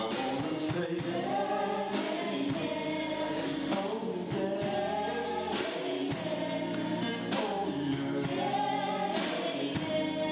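Live vocal group singing gospel-style in harmony with instrumental backing, a male lead voice out front.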